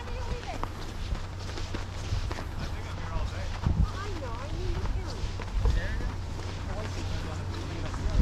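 Walking footsteps on a sanded, packed-snow path, about two steps a second, with the voices of people nearby and a steady low hum underneath.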